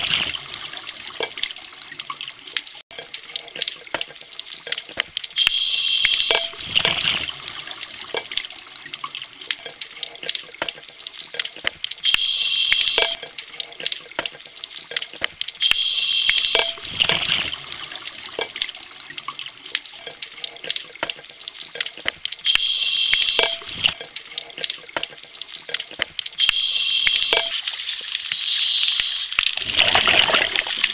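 A scuba diver breathing through a regulator underwater: a hissing inhale every four to six seconds, and three louder bubbling exhaust bursts. A constant light crackle of clicks runs underneath.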